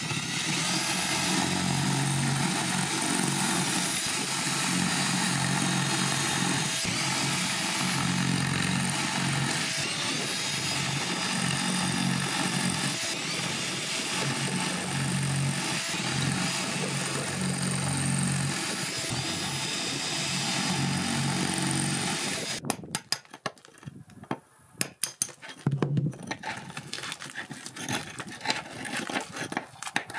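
Ridgid 18-volt cordless drill running steadily as its bit grinds a pilot hole into a stucco wall. About 23 seconds in the steady run ends and the drill sounds in short, stop-start bursts.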